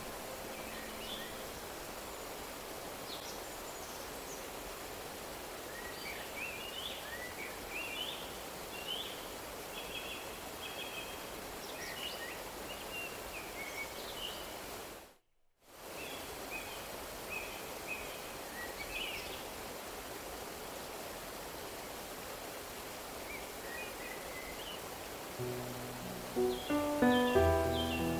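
Steady rush of a small rocky stream, with birds chirping over it. The sound cuts out for a moment about halfway through, and soft piano music comes in near the end.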